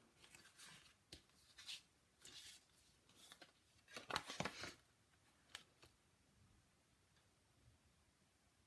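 Faint rustles and light taps of cardstock being handled and moved on a paper-covered craft table. The loudest rustle comes about four seconds in, as a folded card base is picked up.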